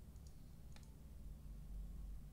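A few faint computer mouse and keyboard clicks, in two close pairs about half a second apart, over a steady low hum.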